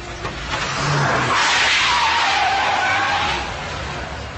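Car tyres squealing on the pavement for about two seconds, the squeal's pitch dipping and then rising again.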